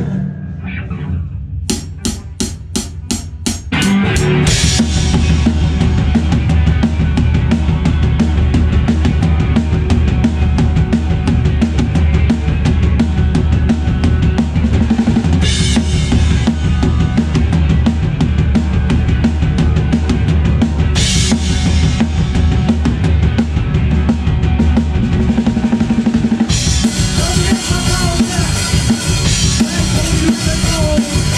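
A punk-grunge rock band starts a song live, heard close to the drum kit: a run of about eight quick clicks at roughly four a second counts the song in, then about four seconds in the full band enters with the drums loudest. Near the end the cymbals get brighter and heavier.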